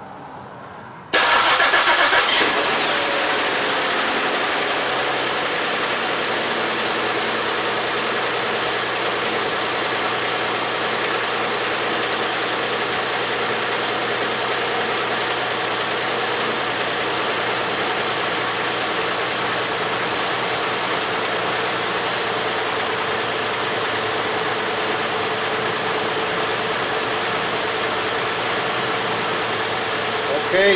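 2008 Ford Edge's 3.5 L V6 engine starting about a second in on its first start after a cylinder head and water pump replacement. It flares briefly, then settles to a steady idle.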